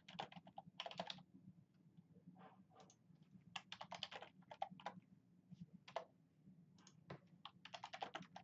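Faint computer keyboard typing, several short bursts of keystrokes with pauses between them, over a low steady hum.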